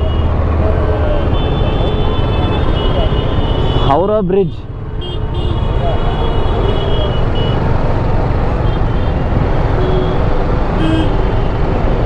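Busy city road traffic: bus, car and motorcycle engines running close by in a steady rumble, with short high-pitched tones like distant horns in the first half.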